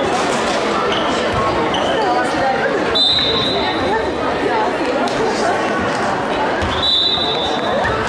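Crowd chatter echoing in an indoor sports hall, with a referee's whistle blown in two short steady blasts, about three seconds in and again near the end, and a handball bouncing on the court floor.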